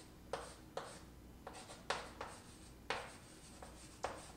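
Chalk writing on a chalkboard: a series of short scratches and taps as a word and arrow are drawn, the strongest about two and three seconds in.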